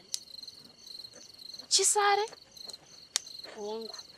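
Crickets chirping in a steady, evenly pulsed high trill.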